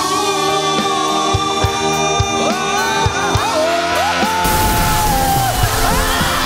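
A man belting a Mandopop rock ballad live into a microphone over a band backing track, holding a long high note. About four and a half seconds in, a loud rush of noise with yells joins the music.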